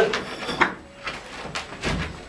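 Clay bricks being handled: a few short scrapes and knocks as they are picked up and carried.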